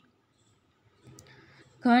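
A woman's reciting voice pauses: about a second of near silence, a single faint click, then her voice starts again near the end.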